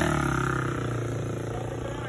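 Custom motorcycle's engine running as the bike rides off, its steady note fading away.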